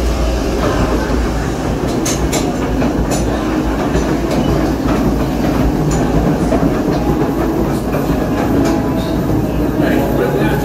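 Log flume boat running on the ride's lift track, a steady clattering rumble with a few sharp clicks about two to three seconds in.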